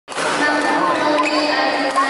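Badminton rally in a sports hall: a sharp racket strike on the shuttlecock about a second in, over a steady murmur of spectator voices.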